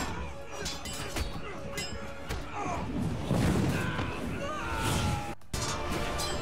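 Soundtrack of a TV action scene: music and sound effects of hits and crashes, with brief voices, and a short break about five seconds in.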